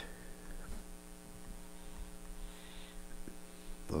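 Faint steady electrical mains hum from the recording setup, a set of evenly spaced buzzing tones with nothing else happening.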